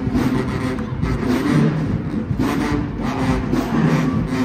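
HBCU marching band playing: sousaphones and low brass hold sustained notes over a steady drum beat.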